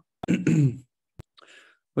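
A man clearing his throat once, a short voiced rasp lasting just over half a second, followed by a single brief click.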